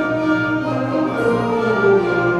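A school concert band with strings plays sustained chords, woodwinds, brass and bowed strings together, while a middle voice steps downward through the second half.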